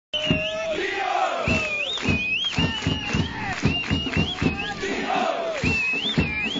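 A football supporters' section chanting a player call in unison to quick, even drumbeats, about three a second, with a thin high tone gliding up and down over the voices.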